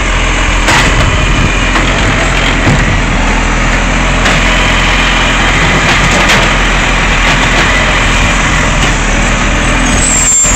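Side-loading garbage truck's diesel engine running loudly while its automated hydraulic arm lifts a wheelie bin to the hopper, empties it and sets it back down, with a few knocks as the bin and arm clank.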